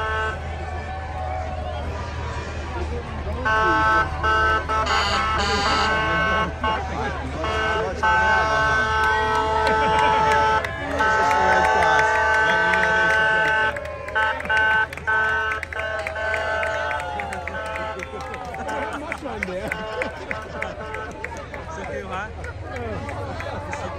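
Vehicle horns in a passing parade sounding long held blasts at several pitches, switching on and off, loudest from a few seconds in until about two-thirds through. Crowd voices and a steady low rumble run underneath.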